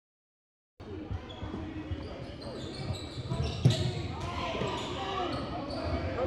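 Basketball dribbled on a hardwood gym floor, with repeated thumps and one sharper, louder bang a little past halfway, among the voices of players and spectators. The sound starts about a second in.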